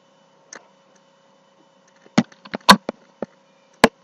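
Scattered sharp clicks: a single one early, a quick irregular cluster in the middle and another just before the end, over a faint steady hum.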